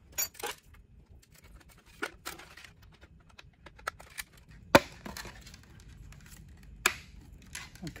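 Scattered clicks and light knocks of small parts being handled: a molded carbon-fiber wingtip and its light bracket picked up and worked by hand on a workbench, with one sharp click a little past halfway.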